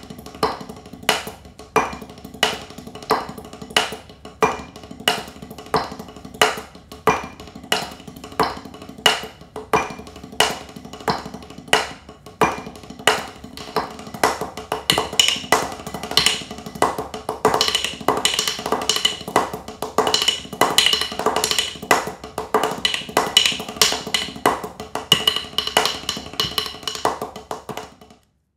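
Drumsticks on a practice pad playing the paradiddle-diddle-diddle sticking at about 90 beats per minute: quick runs of strokes with a loud accent on every beat. About halfway through, the playing grows denser and brighter.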